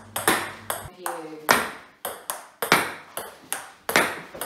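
A table tennis ball being rallied against a thin MDF rebound board on a plastic-laminate table: a quick run of sharp clicks, two or three a second, as the ball strikes the bat, the table and the board in turn.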